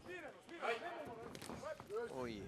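Men's voices calling out, without clear words, with one sharp knock about one and a half seconds in.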